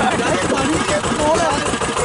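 Motorboat engine running steadily, with passengers' voices talking over it.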